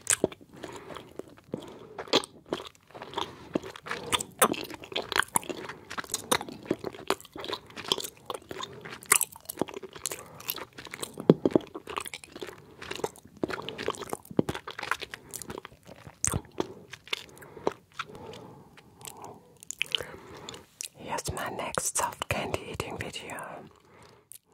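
Close-miked chewing of soft gummy candies: wet smacking and squishing mouth sounds with many irregular sharp clicks of lips and tongue.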